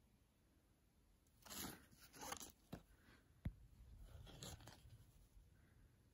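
Near silence broken by a few faint, short rustles and a couple of small clicks.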